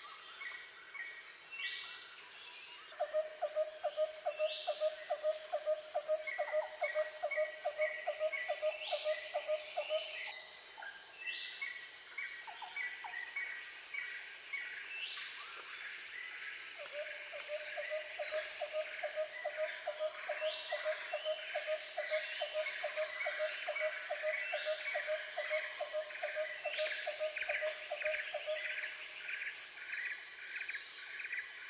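Outdoor nature ambience: a steady high insect drone with repeated bird chirps and trills, and a lower pulsed call, about four pulses a second, that runs for several seconds twice.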